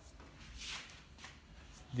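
Faint rustling handling noise from a handheld phone being moved close over a workbench, a few soft swishes.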